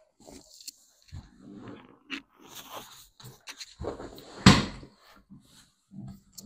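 A person shifting and getting up on a padded chiropractic table, with scattered rustles and brief grunt-like voice sounds. A sharp knock about four and a half seconds in is the loudest sound.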